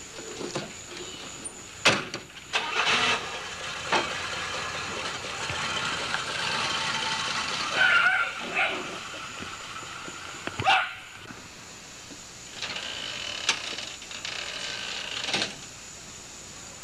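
A car door shuts with a sharp knock, then the car pulls away and drives off. Several more sharp knocks stand out, the loudest about eleven seconds in.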